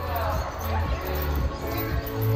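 Background music with a steady low beat over the din of a busy trampoline park, with children's voices and dull bouncing thumps.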